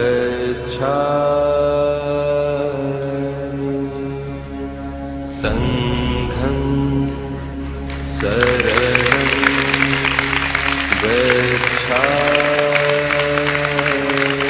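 Devotional singing in long held notes over a steady low drone. About eight seconds in, an audience starts clapping and keeps on under the singing.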